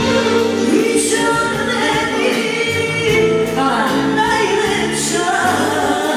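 Live band music: two women singing together through microphones over amplified accompaniment, loud and continuous.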